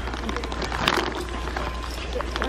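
Metal shopping cart rattling and clicking as it is pushed along, over a steady low hum.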